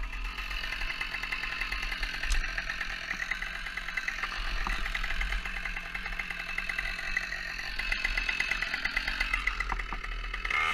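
Chainsaw idling steadily with a fast even putter.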